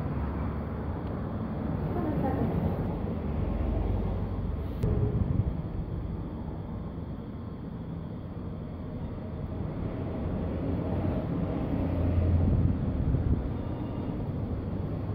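Steady low background rumble with a faint voice about two seconds in and a single sharp click about five seconds in.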